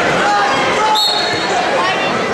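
Voices and chatter of spectators echoing in a gymnasium. About a second in, a short high whistle blast: the referee's signal to start wrestling from the referee's position.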